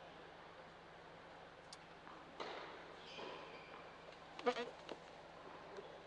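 Quiet indoor tennis hall between points: steady low room hum with faint distant voices, and one short, louder vocal call about four and a half seconds in.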